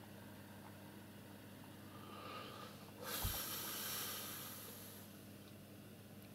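A person's breath: a short, forceful exhale through the nose, heard as a rush of air lasting about two seconds, with a low pop on the microphone as it starts about three seconds in. A faint steady hum runs underneath.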